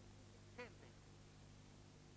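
Near silence with a low steady hum and one faint, brief voice-like sound about half a second in.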